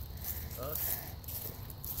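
Handling noise from a phone camera being moved around in the hand: fingers and clothing rubbing near the microphone over a low rumble, with a quiet spoken "okay" about half a second in.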